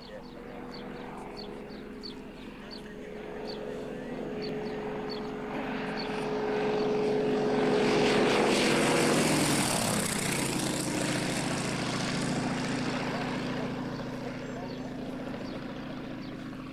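Nanchang CJ-6's nine-cylinder radial engine and propeller on a fast, low flypast. The engine note builds as the plane approaches and is loudest about eight to nine seconds in. It then drops in pitch as the plane passes and fades as it climbs away.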